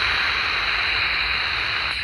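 Loud steady static hiss from the speaker of a HanRongDa HRD-737 pocket receiver tuned to 27 MHz CB, the open channel between two transmissions. It starts abruptly and cuts off as the next station's voice comes in.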